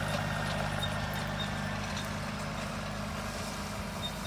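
Compact tractor engine running steadily as it pulls a trailer away, growing slowly fainter.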